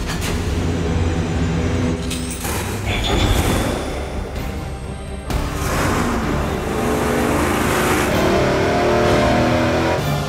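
Music mixed with a V8 race engine running hard on an engine dyno. The sound changes abruptly a couple of times, about two and five seconds in.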